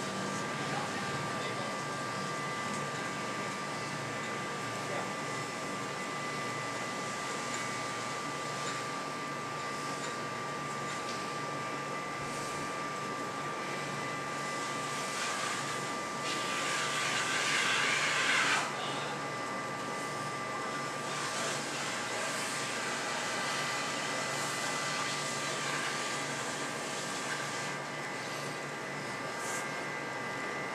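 Steady background machine hum with a thin whine in it. Just past the middle comes a louder rasping noise lasting about two seconds.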